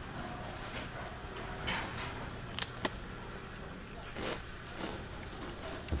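A crisp fortune cookie being broken and eaten: faint crunches over quiet room tone, with two sharp cracks close together near the middle.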